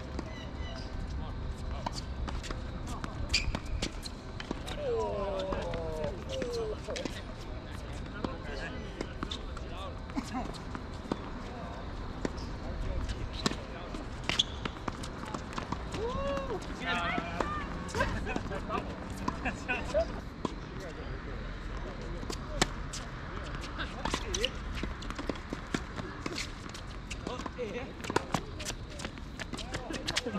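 Tennis rally on a hard court: repeated sharp racket strikes and ball bounces, with a few players' voices calling out between shots over a steady low rumble.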